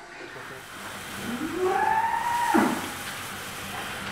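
A cow mooing once: one long call that rises in pitch, holds, then drops sharply near the end.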